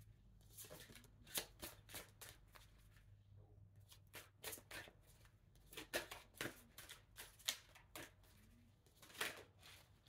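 A deck of tarot cards being shuffled by hand, faint, with irregular soft clicks and slaps of cards sliding against each other.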